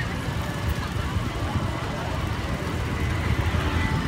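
Busy night-time road traffic, a steady rumble of motorbikes and cars, with crowd voices mixed in.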